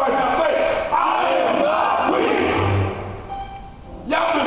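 A man shouting in excited preaching, with a crowd of voices calling out, loud for about three seconds and then dropping away near the end.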